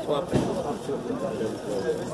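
People talking in the background, an outdoor chatter of several voices, with one short knock about a third of a second in.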